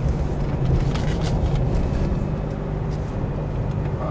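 Steady road and engine noise of a moving car heard from inside the cabin, a low even drone with a few light clicks about a second in.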